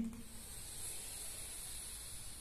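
A slow, steady inhalation through the nose, a soft hiss held for the whole breath.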